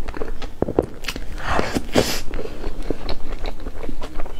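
Close-miked eating of cream cake: chewing and mouth sounds with many small clicks, and a louder noisy swell about one and a half to two seconds in.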